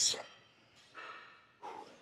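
A man breathing hard after a heavy set of incline barbell bench press: two soft breaths, one about a second in and one near the end.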